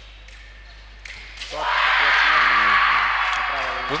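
A female fencer's long, loud shout after scoring a touch. It starts about one and a half seconds in and is held for more than two seconds.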